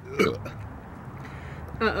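A short, hiccup-like throaty sound with a falling pitch from a person bloated from fizzy soda, then a wavering groaned 'oh' near the end.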